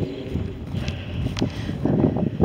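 Wind noise on the microphone, with a few footsteps of a person walking.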